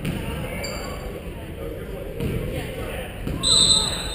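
A referee's whistle blown once, short and loud, near the end, over the chatter of a gym and a basketball bouncing on the hardwood floor.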